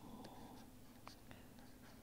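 Near silence: room tone with a few faint ticks from a pen stylus tapping on a tablet while writing.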